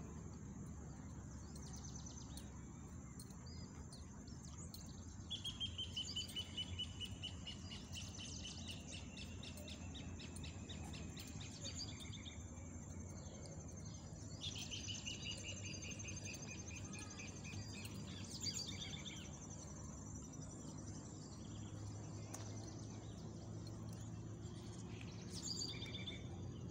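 Outdoor bird calls: a long run of rapidly repeated notes, falling slightly in pitch, a few seconds in and another before the middle, with shorter calls between. Under them runs a steady high insect buzz and a low background rumble.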